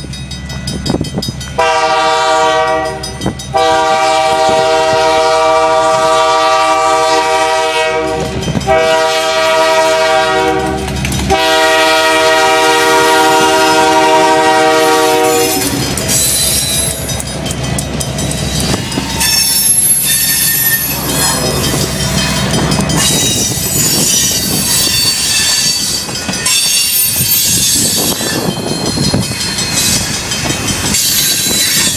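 Diesel locomotive horn sounding four long chord blasts for a grade crossing, the third shorter than the fourth, followed by the steady rumble and clatter of a train of tank cars rolling through the crossing, with intermittent high-pitched wheel squeal.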